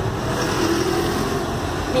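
Steady street traffic noise: a continuous low rumble of vehicles.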